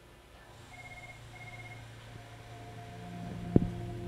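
Soft ambient music fading in: a low hum joined by sustained tones and short repeated high notes, growing slowly louder. A single sharp click sounds near the end.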